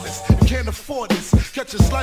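Boom bap hip hop track: a rapped vocal over a drum beat with regular kick and snare hits and a bass line.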